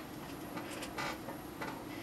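Faint, scattered light clicks and taps of handling at a kitchen table as a wooden spoon is picked up.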